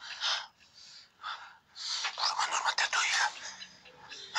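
Hoarse, whispered voices and heavy breathing in short breathy bursts; the longest and loudest comes about two seconds in and lasts over a second.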